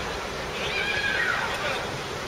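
A high-pitched shout from a voice on or around a football pitch: one drawn-out call that rises and then falls in pitch, over steady background chatter and outdoor noise.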